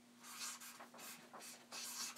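Marker pen writing on flip-chart paper: several short, faint scratchy strokes as a word is written out.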